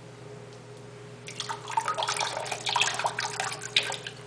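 Liquid food dye squeezed from a small plastic bottle into the water of an open toilet cistern, splashing and trickling in an irregular patter for about two and a half seconds, with a sharp click near the end. A steady low hum runs underneath.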